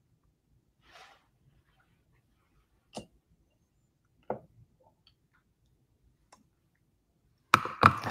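Lip gloss being applied with a wand applicator: a few faint, scattered clicks and small wet mouth sounds, with a soft brief hiss about a second in and sharper clicks near the end.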